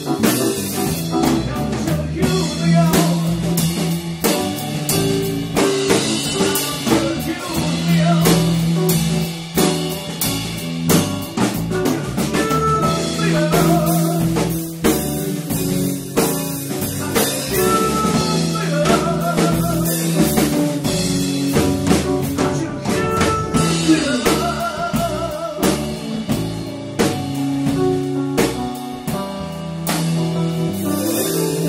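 A live band playing a rock/blues jam: a drum kit with cymbals keeping a steady beat, together with guitar.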